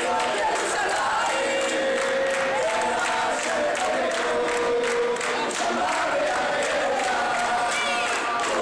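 A group of male voices singing a melody together in unison, with hands clapping along in a steady beat.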